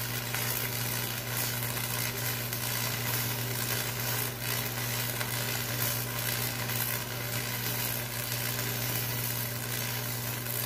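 Electric arc welding on a steel blade: the arc gives a steady crackling sizzle, with a steady low hum underneath.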